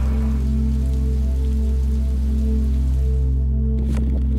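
Rain falling, heard over background music made of sustained low tones.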